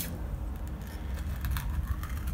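Faint handling sounds of a jar of body scrub being opened: a few light clicks and scrapes.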